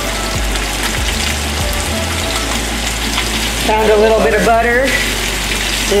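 Spice-coated striped bass fillets frying in a nonstick pan in olive oil and melting butter, with a steady sizzle.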